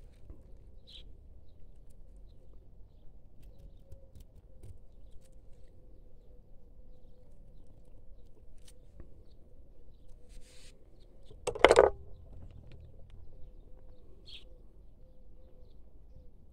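Faint, brief bird chirps over a low steady outdoor background, with one loud sound lasting about half a second about three-quarters of the way through.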